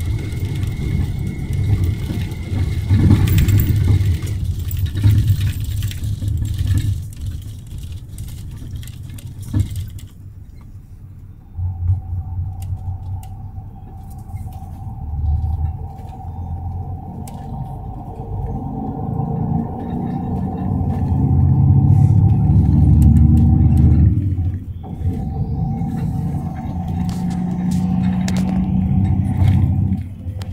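Cabin of a moving intercity bus: steady low engine and road rumble, with a steady whine that comes in about a third of the way through.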